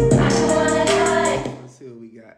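A trap beat playing back: quick hi-hats over a sustained sampled melody and bass, cut off about one and a half seconds in.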